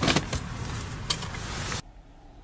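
A car at rest: a loud clunk and rattle at the start and a sharp click about a second in, over a steady hiss of background noise that cuts off abruptly near the end.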